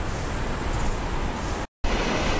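Steady wind rushing over the microphone with the wash of low surf beneath it, cutting out for a split second near the end.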